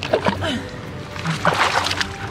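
Water splashing in irregular bursts as a wet beagle scrambles out of a creek onto the rocks, the loudest splash near the end.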